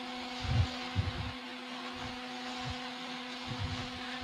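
A steady low hum with a faint hiss through the hall's sound system, broken by a few soft low thumps in the first second or so.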